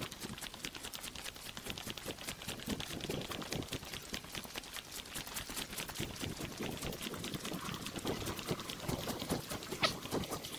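Footsteps of a person walking at a steady pace on a dirt track, with a light crunch on each step.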